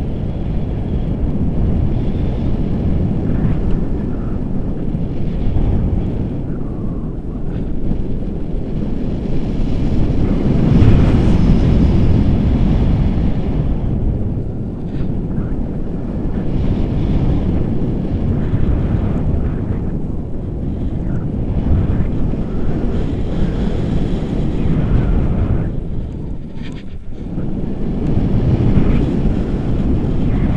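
Loud wind noise from the airflow of a tandem paraglider in flight buffeting the camera's microphone. It swells about a third of the way in and dips briefly near the end.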